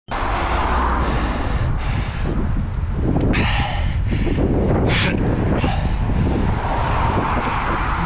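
Wind buffeting the microphone of a bicycle-mounted camera while riding, a steady rumble with a few short hissing swells.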